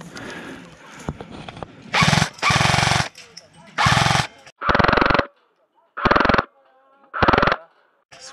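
XM177E1 electric airsoft gun firing six short full-auto bursts, each under a second long. Before them come a few light clicks of a magazine being handled and seated.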